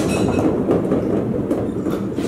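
Many small bouncy balls rolling and bouncing across a hardwood floor, making a dense, steady clattering rumble.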